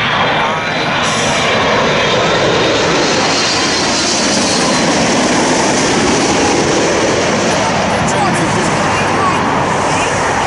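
Jet engines of a Boeing 787-8 Dreamliner on final approach passing low overhead: a loud, steady roar that builds in the first second, with a high turbine whine in it.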